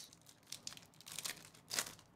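Crinkling plastic trading-card pack wrapper being torn open by hand: a run of soft crackles, then one louder rip near the end.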